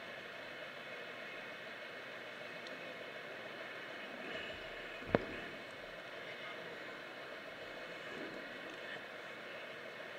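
Low, steady room noise with no speech, broken by a single sharp click about halfway through.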